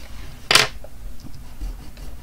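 A single short rustle of hands moving over drawing paper, about half a second in, with faint handling noise after it.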